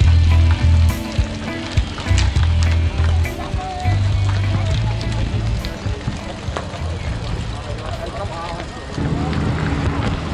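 Wind buffeting a bike-mounted camera's microphone, with tyre and road noise, as a bicycle rolls in among a crowd of cyclists. People's voices murmur in the background.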